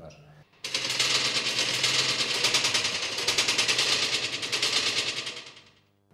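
A fast, continuous rattle of sharp hits, like rapid fire, starting abruptly under a second in and fading away over the last second.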